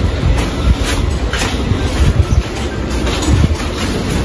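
Wind buffeting the microphone in a steady low rumble, with faint footsteps about twice a second.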